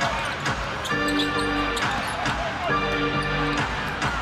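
Arena music over the public-address system, two held chords about a second each, over the thuds of a basketball being dribbled on a hardwood court and crowd noise.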